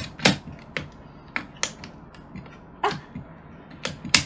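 Plastic toy can-badge maker being worked by hand: its spring-loaded press handle gives a series of short, sharp plastic clicks and creaks, about seven of them at irregular intervals.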